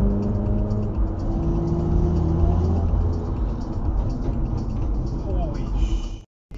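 Car driving on a highway, heard from inside the cabin: steady low road and engine rumble, with a hum whose pitch slowly rises as the car accelerates.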